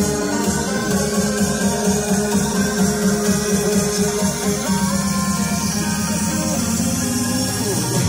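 Electronic music playing in a Hyundai Creta's cabin through its upgraded DD Audio DC6.5a component door speakers and DD C4.60 amplifier, fed from the factory head unit: a pulsing bass line under a plucked melody, with a falling sweep near the end.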